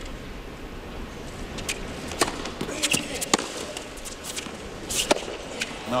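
A tennis rally on a hard court: a ball struck by rackets, several sharp hits with the clearest about two, three and five seconds in, over a steady crowd hum.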